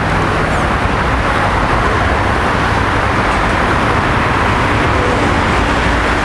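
Steady road traffic noise: a continuous, even rushing with no distinct passing vehicle or other event standing out.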